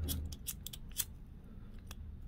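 Small hand tools being handled at a fly-tying bench: a quick run of small sharp clicks through the first second, the loudest at about a second in, then one more click near the end.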